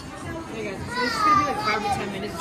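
Young children's voices, one high-pitched voice drawn out about a second in, over restaurant murmur.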